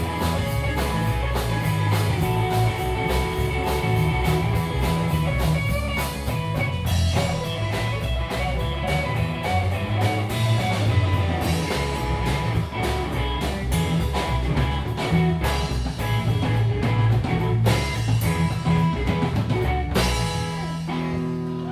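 Live rock band playing an instrumental passage: electric guitar over bass guitar and a drum kit keeping a steady beat with cymbals.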